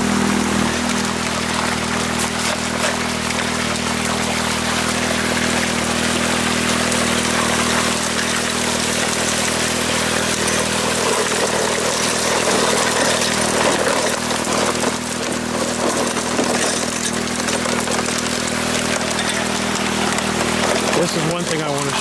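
Water rushing steadily through a mini highbanker's aluminium sluice runs, over the constant hum of an engine running at one speed.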